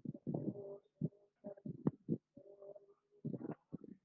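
A faint, muffled voice speaking in short broken phrases.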